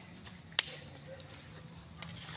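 Quiet background with a faint steady low hum and one sharp click about half a second in.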